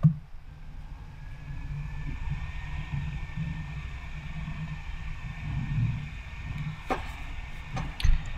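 Steady low hum of room or computer noise with a faint high whine, broken by a sharp computer-mouse click at the start and two lighter clicks near the end.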